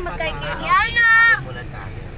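A voice in a moving vehicle: a few spoken words, then a loud, high, wavering vocal call lasting about half a second, over the vehicle's low steady rumble.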